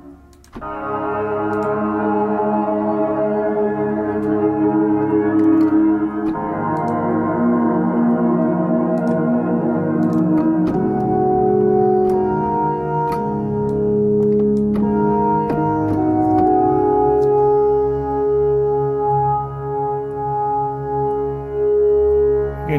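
A synthesizer patch from the ORBIT Kontakt library, played from a keyboard as a held chord that shifts and moves in texture while the notes sustain. About eleven seconds in, the chord changes to new notes.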